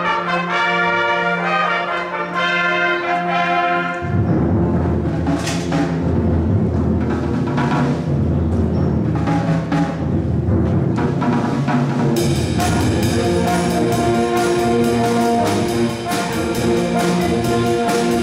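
School band playing: trumpets and other brass hold chords, then about four seconds in the music drops into a fuller, lower passage with occasional drum and cymbal hits. Past the middle it becomes a busier passage with quick, even drum-kit and cymbal beats under the brass.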